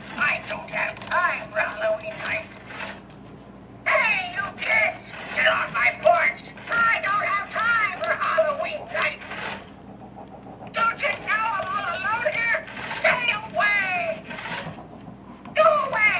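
Animated rocking-granny Halloween prop speaking in a recorded old woman's voice through its small built-in speaker. The voice sounds thin and tinny, with no bass, and comes in three spells with two short pauses.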